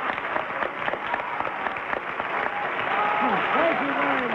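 Studio audience applauding steadily, with voices rising over the clapping in the last second.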